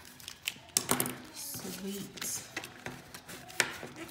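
Paper envelopes and a pen handled on a tabletop: paper rustling with a run of sharp clicks and taps, the loudest about a second in and again near the end.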